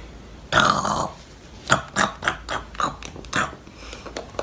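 A child's short drawn-out vocal noise, falling in pitch, about half a second in. It is followed by a quick run of about seven light clinks and scrapes as a metal spoon scoops sugar scrub into a small glass jar.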